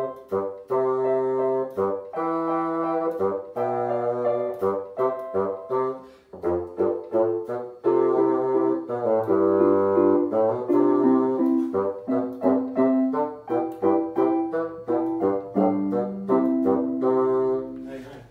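Bassoon and electronic keyboard, set to a piano sound, playing a simple dance tune together as a duet in a series of separate notes, finishing on a long held note near the end.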